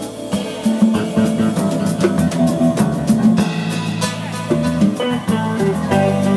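Live jazz band playing: electric guitar to the fore over a drum kit, with steady drum hits under sustained guitar notes.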